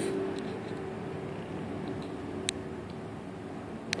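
Low, steady room background noise with a faint hum, broken by two small sharp clicks, one about halfway through and one just before the end.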